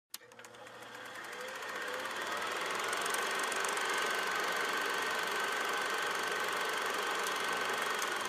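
A rapid, even mechanical clatter that fades in over the first couple of seconds and then runs steadily, with a thin steady tone entering about three seconds in, under an animated title card.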